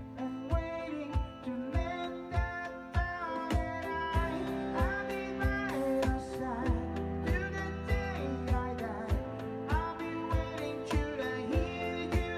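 A live band playing a song: an electronic drum kit keeps a steady beat under a woman singing.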